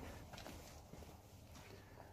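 Near silence, with faint footsteps on a concrete floor as the camera is carried into the shed.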